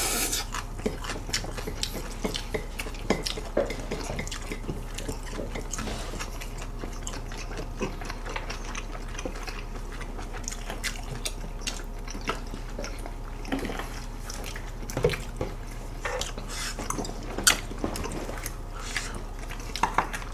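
Close-miked eating: wet chewing and slurping of noodles and meat, with scattered small clicks of chopsticks against bowls and dishes, over a steady low electrical hum.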